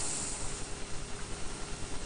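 Steady hiss of background noise in a pause between speech, with no distinct sound event.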